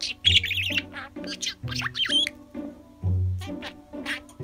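A budgerigar chattering in quick warbling chirps, loudest in the first second and again about two seconds in, over background music.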